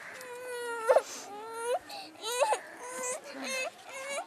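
A small child crying: a string of high-pitched, sobbing wails, several in a row, some rising in pitch at the end.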